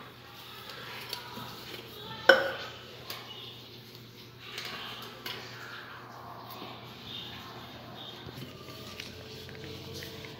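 Quiet kitchen handling sounds: one sharp knock about two seconds in, then a few lighter clicks and rustles as utensils and a container of tomato paste are picked up and opened on a stone countertop.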